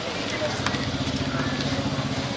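Street ambience with a steady low hum from an idling vehicle engine, under indistinct voices and a few faint clicks.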